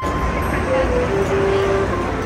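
Busy city street noise: a low traffic rumble and passers-by's voices, with background music playing a simple melody of held notes over it from about a second in.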